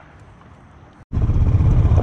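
Faint outdoor background for about a second, then, after a sudden cut, an ATV engine running, loud and low with a fast, even pulse.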